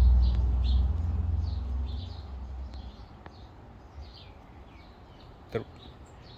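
Birds chirping faintly in the background, short high chirps repeated throughout, over a low rumble that fades out over the first two seconds or so.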